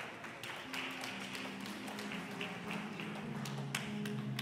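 Scattered knocks and taps as a congregation gets to its feet, seats and feet bumping and shuffling. About a second in, soft sustained low chords begin to play and change slowly underneath.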